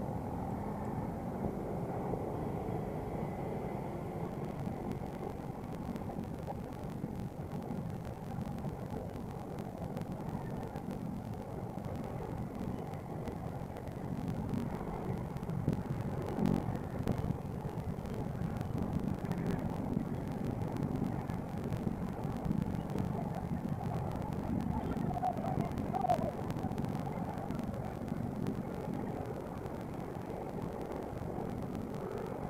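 Motorcycle riding at low speed: steady engine and road noise picked up by a camera mounted on the bike, with other motorcycles running close ahead.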